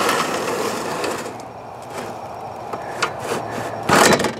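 The telescoping metal lift post of a pop-up camper's roof-raising mechanism being slid together by hand: a scraping rattle of metal on metal in the first second, then a few light clicks and knocks as the sections settle.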